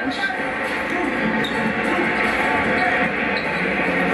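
Arena sound of a televised basketball game during a stoppage: a steady crowd murmur with indistinct voices, heard through a TV speaker.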